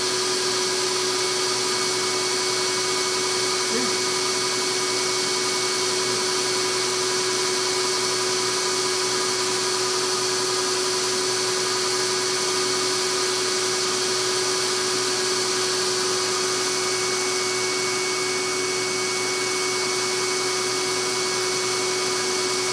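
Air track's blower running: a steady rush of air with a constant whine of several fixed tones.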